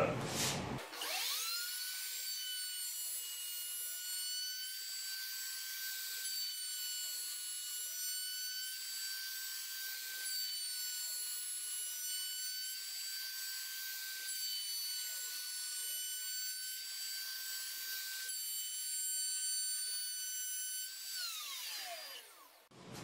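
CNC router's router motor spinning up about a second in, then running with a steady high whine at about 20,000 rpm while its 1/2-inch straight carbide bit cuts an arch along a wooden table rail at 100 in/min. Near the end the motor switches off and its pitch falls away as it winds down.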